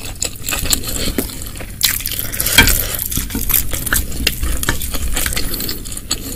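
Wooden spoon stirring and scooping through thick spicy broth in a glass baking dish: wet sloshing broken by many small clicks and scrapes of the spoon against the glass.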